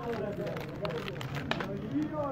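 Indistinct voices talking in the background, with scattered sharp clicks, the sharpest about one and a half seconds in.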